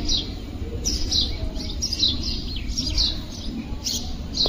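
Small birds chirping: short, high, falling notes repeated two or three times a second, over a steady low rumble.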